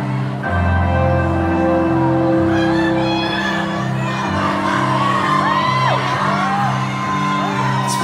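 Live band playing the soft, sustained opening chords of a ballad over a slow-moving bass line in a concert hall. From about five seconds in, fans in the crowd whoop and scream over the music.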